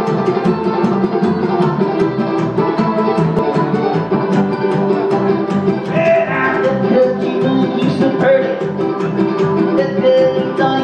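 Live acoustic string band playing a fast-picked tune, with banjo and upright bass alongside a third stringed instrument, heard in a club room.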